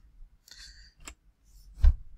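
A few sharp clicks from a computer keyboard and mouse: a brief rustle about half a second in, a light click just after a second, and a louder knock with a low thud near the end.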